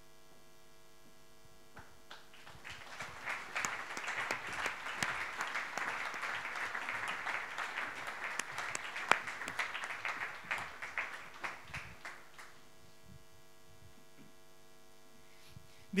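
Audience applause, starting about two and a half seconds in, lasting about ten seconds and then dying away. A steady electrical hum is heard before and after it.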